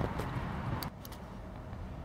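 Dry autumn leaves rustling and crackling as they fly up in a flurry, cut off abruptly just under a second in. After that there is only a steady low outdoor rumble.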